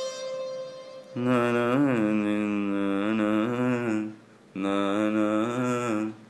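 Electronic keyboard playing a low melody in a voice-like, chant-like tone: two sustained phrases with a short gap about four seconds in, and a slide in pitch near the start of the first phrase. A higher held note fades out during the first second.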